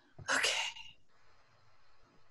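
A single short, breathy spoken "okay" about a quarter of a second in, followed by faint, barely audible sounds of pencil and paper being handled.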